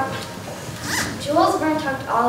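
A young girl's voice speaking, reciting a stage monologue, with a brief rasp about halfway through.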